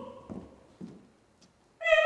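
A sung note dies away in the hall's reverberation, then a moment of near silence with a couple of faint low sounds, and an opera singer comes in with a loud held note near the end.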